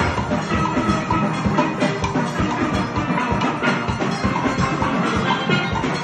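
Steel band playing: many steelpans, from chrome tenor pans to barrel-sized bass pans, struck together in a continuous, dense stream of ringing notes.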